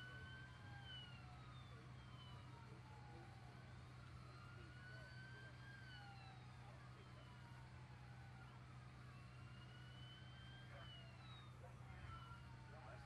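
Faint emergency-vehicle siren wailing: a slow rise and a quicker fall in pitch, repeating about every five seconds, over a steady low hum.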